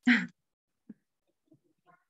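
A woman's brief laugh, over in about a third of a second, then near silence.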